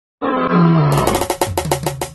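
A lion roaring, a low call falling in pitch, with music and a fast run of drum strokes coming in about a second in.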